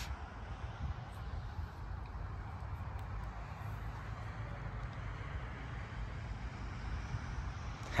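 Distant road traffic: a steady, low rumble of background noise.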